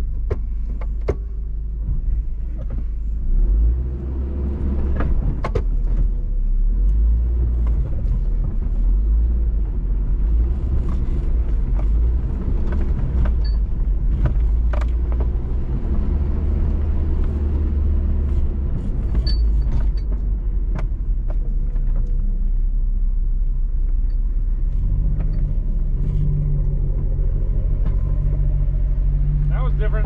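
Off-road vehicle driving slowly over a rough dirt trail: a steady low engine and drivetrain rumble with scattered knocks and rattles as it bumps over ruts. The engine note steadies in the last few seconds.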